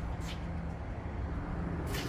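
Steady low mechanical hum with a faint click about a quarter second in and another near the end.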